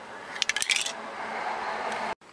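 A quick run of small, hard clicks about half a second in as the small plastic toy parts are handled. From about a second in comes the steady hiss of an aerosol can spraying silver paint.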